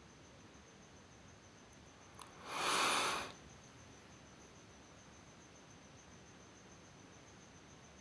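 Masking tape pulled from its roll and torn off: one short noisy rip lasting under a second, a little over two seconds in, just after a light click.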